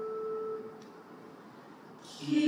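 A held two-note instrumental chord, steady and pure-toned, dies away about two-thirds of a second in, leaving faint room hiss.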